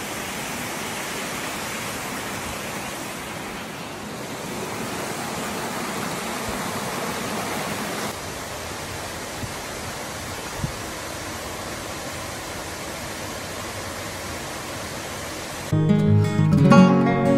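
Steady rush of a rocky stream running over small cascades and waterfalls. A single short knock comes about ten and a half seconds in, and acoustic guitar music starts just before the end.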